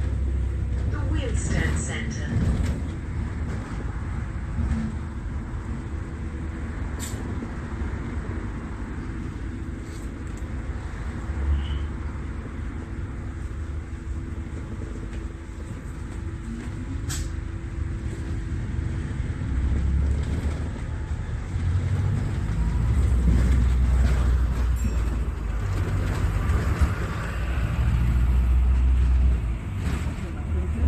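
A moving road vehicle heard from inside: steady low engine and road rumble with a faint hum, growing louder in the last third, and a couple of sharp clicks.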